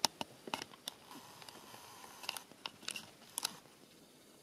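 Faint, irregular clicks and taps of a camera being handled while its angle and framing are adjusted, with a few closely spaced clicks near the end.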